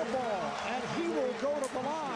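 Speech: a man's voice talking over the noise of a televised basketball game.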